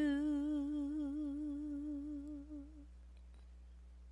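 A voice holding one long note with vibrato in a worship song, fading out about three seconds in and leaving only a faint low hum.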